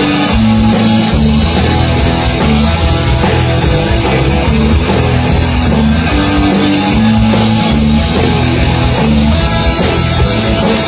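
A live rock band playing a heavy stoner grunge rock song: electric guitars and bass over a drum kit. The cymbals are struck in a steady rhythm, a few strokes a second, and the whole passage is loud without a break.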